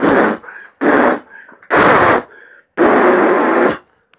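A man blowing hard, right into the microphone, in four loud puffs of breath, each a rushing blast, the last one the longest at about a second.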